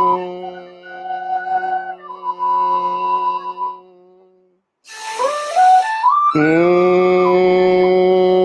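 A man's Bhramari humming-bee breath: a long, steady nasal hum, unbroken by words. It stops about halfway through, a quick breath is drawn in, and a fresh hum starts about six seconds in.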